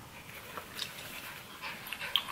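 Faint breathing and soft mouth sounds, with a few quiet rustles or clicks, from someone with a foul-tasting jelly bean in her mouth bringing a paper tissue up to it.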